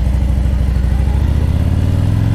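2017 Harley-Davidson Ultra Classic's Milwaukee-Eight 107 V-twin running under way, with a steady low pulsing exhaust note that rises in pitch in the second half as the bike accelerates.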